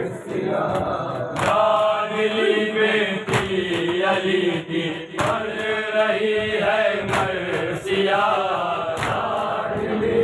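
A group of men chanting an Urdu noha (Shia lament) in unison. Their open-hand chest strikes (matam) land together as one sharp slap, five times, about every two seconds.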